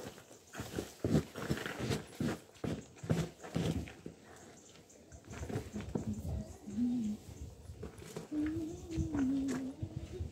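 Rustling and soft knocks as a bareback saddle pad is handled and settled onto a pony's back, busiest in the first few seconds, with a few short wavering whines later on.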